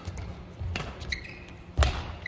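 Badminton rally: two sharp racket strikes on the shuttlecock about a second apart, the second the louder, with short high squeaks of court shoes on the floor between them.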